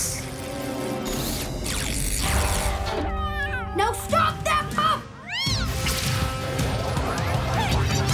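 Cartoon soundtrack: background music under sound effects, with a run of fast wavering pitch glides about three seconds in and several rising-and-falling swooshes around the middle.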